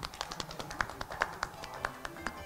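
A few people clapping by hand, a quick, irregular patter of claps.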